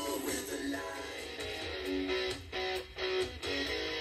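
Music with guitar played through a tactile exciter fixed to the back panel of a speaker cabinet, heard at low level from the panel itself. This is a test of how much the cabinet panel resonates, and the exciter itself is adding audible sound of its own.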